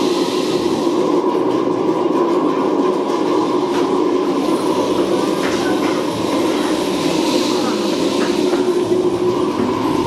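Shakers and djembes played together in a dense, steady wash of sound with no clear separate beats.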